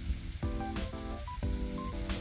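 Onions, cabbage and mixed vegetables sizzling in a hot wok, under background music of held notes that change every half second or so.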